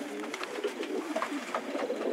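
Racing pigeons cooing in the loft, several low wavering coos overlapping continuously.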